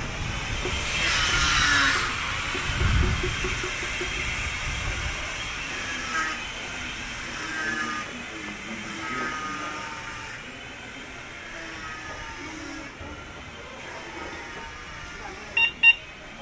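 Alley street ambience: faint voices of residents talking or singing, a brief loud rushing noise about a second in and a low rumble soon after. Two sharp clicks just before the end are the loudest sounds.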